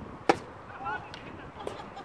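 Tennis ball impacts in a rally: one loud, sharp hit about a third of a second in, and a fainter hit near the end.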